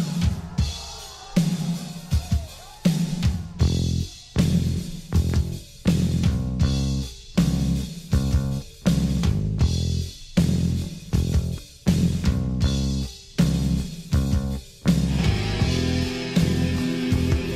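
Heavy metal song with drum kit and heavy bass and guitar chords hit together in a stop-start, marching rhythm, a little under once a second, giving way to a sustained guitar passage near the end.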